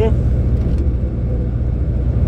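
Heavy truck driving steadily, its engine and tyre drone heard from inside the cab as a constant low rumble.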